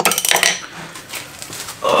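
Steel hand tools clanking: a breaker bar and socket set against a steel yoke-holding tool, with a sharp metallic clatter at the start and a few lighter clicks about a second later.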